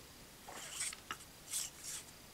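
Faint rubbing and a few light ticks as fingers handle and turn a small plastic toy tire part.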